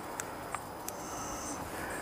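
Low background hiss with about three faint clicks in the first second: the buttons of a small handheld Runleader tach and hour meter being pressed to change its setting.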